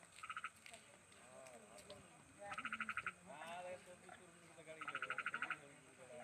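Frog calling at night: three short, rapid pulsed trills, each about half a second long and a couple of seconds apart.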